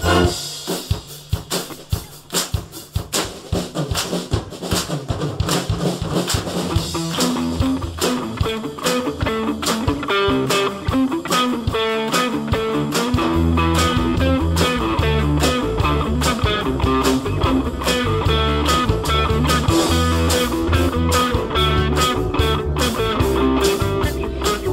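Concert band playing a rock-classics medley arrangement live, with percussion keeping a steady beat. The full band drops back just after the start to a sparser passage, then builds up again, and from about halfway the low brass and bass come in strongly under the full ensemble.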